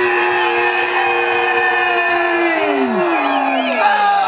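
A horn-like sound effect played through the sound system: a loud, held chord of several tones that bends downward in pitch about two and a half seconds in, with warbling siren-like tones above it near the end.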